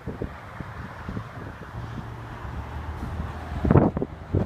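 Wind rumbling on a handheld phone's microphone outdoors, over a low steady hum, with light knocks from the phone being handled. A louder burst comes near the end.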